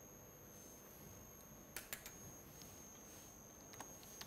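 A few faint computer keyboard keystrokes over quiet room tone: two quick clicks about two seconds in and two more near the end.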